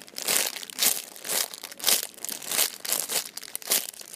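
Clear plastic packaging bag crinkling as hands squeeze and turn a squishy toy inside it, in irregular bursts several times a second.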